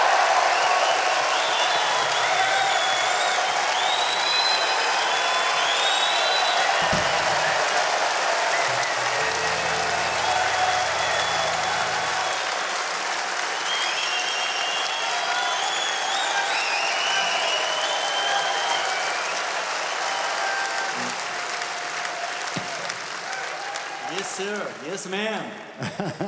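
A large concert-hall audience applauding and cheering, with scattered shouts over the clapping, tailing off slightly near the end.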